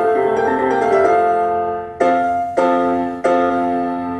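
Piano accompaniment playing the closing bars of an opera aria: a held chord dies away, then three chords are struck in the second half and left to ring.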